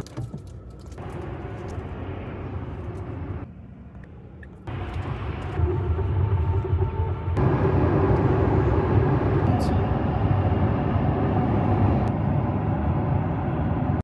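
Road and tyre noise heard inside a moving car at motorway speed: a steady low rumble that jumps abruptly in level several times, quietest a few seconds in and loudest in the second half.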